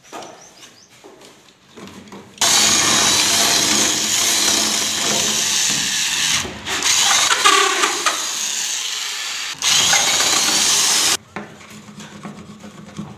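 Corded electric drill with a long wood bit boring a hole through a wooden door. It runs loudly for about nine seconds, with a brief stop partway and another about a second before it cuts off near the end.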